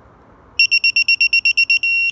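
Digital torque wrench beeping fast, about ten beeps a second from half a second in, as a cylinder-head stud nut is pulled towards its set torque. Near the end the beeps join into one steady tone: the 40 ft-lb setting has been reached.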